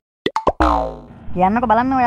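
Cartoon comic sound effect: a few quick pops, then a boing whose pitch falls and dies away, followed by a dubbed voice speaking.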